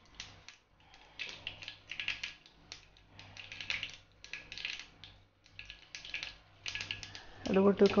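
Mustard seeds crackling and spitting in hot oil in a small frying pan, in irregular clusters of quick pops: the tempering for a pineapple pachadi getting hot. A voice comes in near the end.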